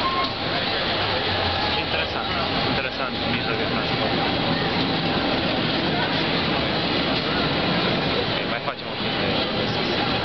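San Francisco cable car pulling away along its track, hauled by the cable, under a steady street din with the voices of people waiting nearby.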